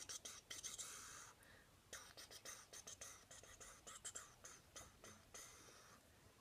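Near silence with faint scattered clicks and a few soft, breathy hisses.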